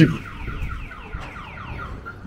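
Car alarm sounding a fast run of falling electronic chirps, several a second.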